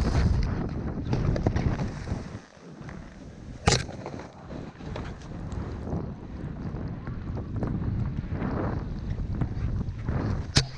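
Rush of deep powder snow spraying past during a fast ride down, with wind buffeting the microphone. A single sharp knock about three and a half seconds in.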